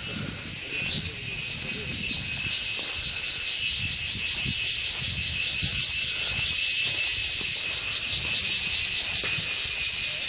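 Insects keep up a steady, high, finely pulsing buzz that grows a little louder over the second half, over an uneven low rumble.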